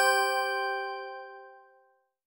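A single bell-like chime sound effect, struck once and ringing out, fading away over about two seconds.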